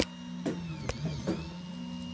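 Reach 3D printer's stepper motors running as the print head moves, a low steady hum with faint whining tones that rise and fall in pitch. Two sharp clicks, one at the start and one about a second in.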